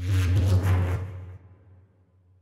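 Electronic music played back from a Dolby Atmos mix: a deep synth bass note under a bright, noisy whoosh-like sweep. It starts suddenly and fades away over about a second and a half. The sound is rendered binaurally for headphones and panned right behind the listener's ears.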